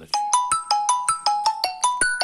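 A phone ringtone: a fast run of bright, marimba-like notes, about six a second, moving up and down in pitch.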